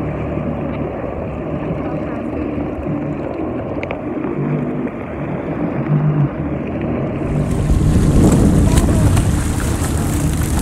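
Jet ski engine running under way, with wind buffeting the microphone and water rushing past the hull. For the first seven seconds it sounds dull and muffled; then it cuts to a louder, fuller rush of wind and water over a heavy low rumble.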